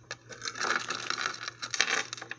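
Clear plastic jewelry bags crinkling and rustling as they are handled, a dense run of sharp crackles that starts just after the beginning.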